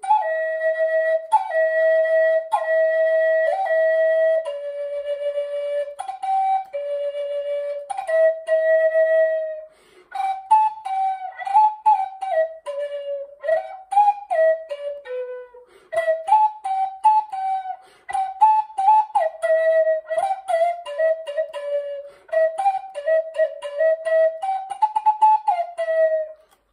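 Wooden Native American-style flute playing a slow melody: long held notes, each restarted with a short accent, for the first ten seconds, then a quicker line that moves up and down, broken by brief pauses between phrases.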